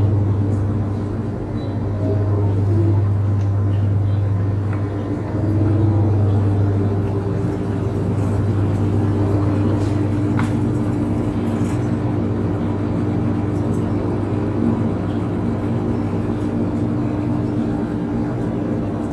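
Steady low electrical hum of supermarket refrigerated display cases and cooling, with no breaks.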